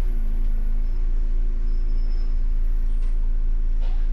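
MAN Lion's City city bus engine running steadily at low revs, heard from the driver's cab as a deep rumble with a steady hum. There is a faint knock near the end.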